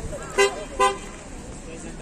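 Two short vehicle horn toots, about half a second apart, over faint background voices.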